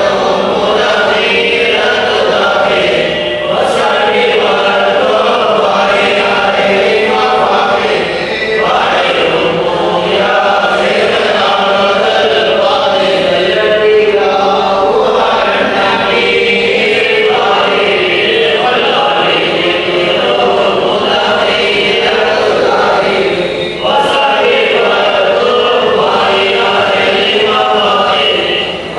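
A group of men chanting a devotional Arabic praise poem (baith) together, with a few brief pauses between phrases.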